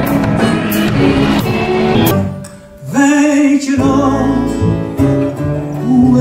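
Live music: a band with stage keyboard and a regular beat, which drops away about two seconds in. After a short lull a different song begins, with a woman singing over instrumental accompaniment.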